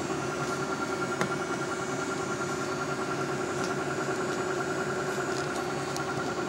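Steady hum of running fusor lab equipment, with a few steady whining tones over it and one faint click about a second in.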